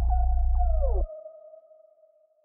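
End of a bass-boosted trap track: a deep bass beat under a held synth tone cuts off suddenly about a second in, a tone sliding down in pitch as it stops. The held synth tone then fades out.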